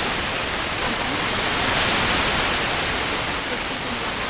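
FM receiver hiss from a software-defined radio tuned to 65.74 MHz in the OIRT band: steady static with no station audible through it, the Sporadic-E signal faded into the noise. The hiss swells a little in the middle.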